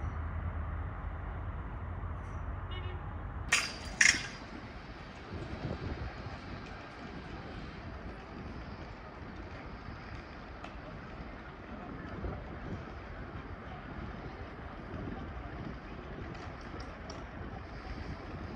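Outdoor railway-station ambience: a steady low background noise with faint voices. Two sharp, loud knocks, half a second apart, come about three and a half seconds in.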